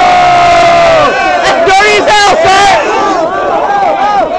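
A group of men yelling and hollering: one long drawn-out yell for about the first second, then several overlapping shouts and whoops.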